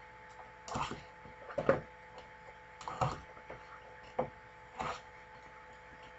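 Cardboard trading-card boxes and packs being handled on a table: about five short scrapes and rustles, spaced a second or so apart. A faint steady hum runs under them.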